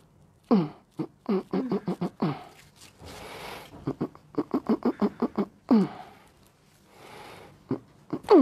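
Wordless human vocal sounds: quick runs of four or five short voiced bursts, each falling in pitch, with audible breaths between the runs, as a person laughs or groans during hands-on manipulation of the arm.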